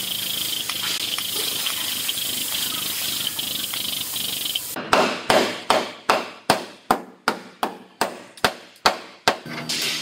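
About a dozen hammer blows on the crushed sheet-metal corner of a pickup bed, each a sharp metallic strike with a short ring, about two and a half a second, starting about halfway through. Before them a steady hiss with a faint high whine.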